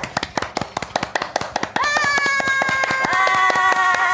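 Two people clapping rapidly. From about two seconds in, two women's voices join in a long, held high-pitched cheer.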